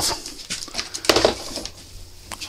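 Handling noise on a clip-on lapel mic: rustling and bumping as a rubber half-face respirator is pulled off and knocks against the mic.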